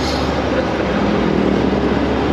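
Small classic Fiat car driving along a street: steady engine and road noise, with a faint low engine hum in the middle and no sudden sounds.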